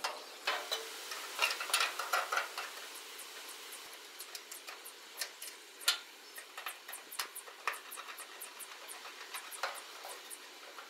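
Faint, irregular small metal clicks and ticks from hand work on gas grill burners as they are screwed to their brackets, busiest in the first couple of seconds and sparser after, with one sharper click about six seconds in, over a low hiss.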